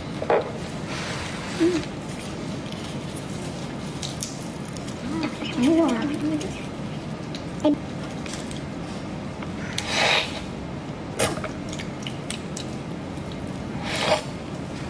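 Gloved hands tearing apart a large marinated shrimp's shell: short wet cracks and crackles, the loudest about ten seconds in, over a steady background hiss, with a few brief murmured vocal sounds.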